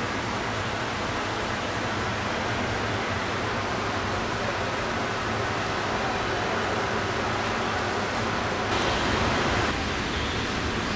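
Steady rushing noise with no distinct events, turning a little louder and brighter for about the last second.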